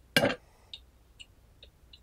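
Tea poured from a small zisha clay teapot through a metal strainer into a glass pitcher: a short splash as the last of the stream comes out, then a few separate drops falling from the spout, each a small sharp tick.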